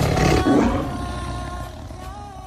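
A tiger roaring once, loudest in the first second and then fading, over a song's sustained music.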